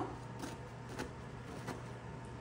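Faint clicks of a metal spatula cutting down through baked cookie-brownie bars in an aluminium foil pan, three soft taps over a low steady hum.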